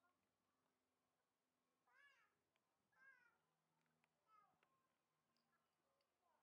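Faint, high-pitched calls: three short cries about a second apart, each rising and then falling in pitch.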